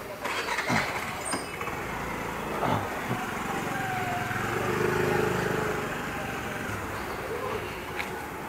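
A motor scooter rides past close by over steady street noise. Its small engine swells to its loudest about five seconds in, then fades as it goes away.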